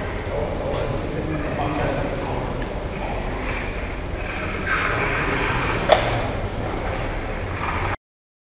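Indistinct voices of several people talking over a steady low room rumble, with a single sharp click about six seconds in.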